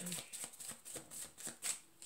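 A deck of tarot cards being shuffled by hand: a quick run of soft card clicks and flutters, with a louder snap near the end.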